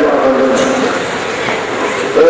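A large gathering of voices chanting together in long drawn-out notes, likely the crowd's amens during a supplication.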